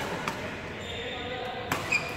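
Badminton rackets striking shuttlecocks in a large hall: a light hit about a quarter second in, then two sharp hits near the end, the last the loudest, followed by a short high squeak.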